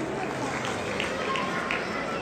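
Table tennis balls striking bats and tables in a steady run of sharp clicks, about three a second, over a background murmur of voices in the hall.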